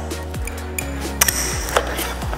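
A few sharp clicks and clacks from the weight-selector knobs of an MX Select MX55 adjustable dumbbell being turned and the dumbbell being handled in its cradle, over background music.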